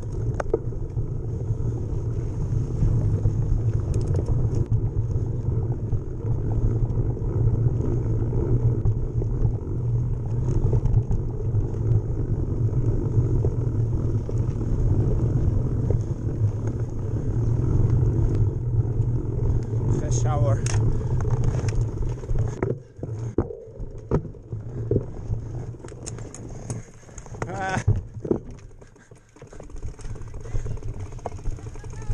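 Rumble and wind noise of a mountain bike ridden fast down a dirt singletrack, picked up by a camera mounted on the bike. About 22 seconds in the rumble drops off and breaks into uneven knocks and rattles as the bike slows. Voices call out briefly twice.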